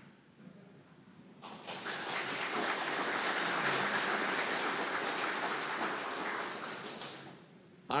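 Audience applauding. The clapping starts about a second and a half in, holds steady for several seconds and dies away near the end.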